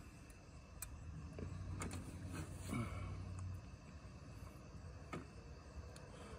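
A faint low hum with a few soft clicks, and one word spoken quietly about halfway through.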